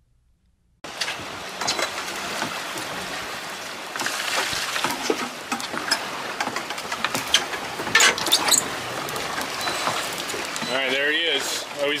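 Steady wind and water noise aboard a small fishing boat at sea, starting suddenly about a second in, with scattered clicks and knocks through it.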